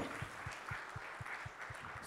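Faint audience applause, an even patter of many hands clapping.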